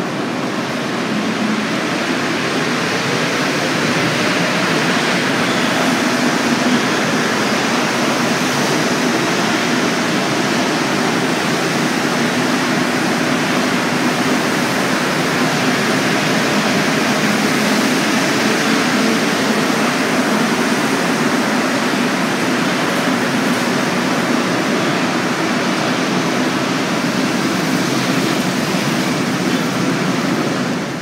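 Montreal MR-63 rubber-tyred metro train pulling out along the platform: a steady, loud rush of running noise. A faint rising whine sounds in the first few seconds as it accelerates.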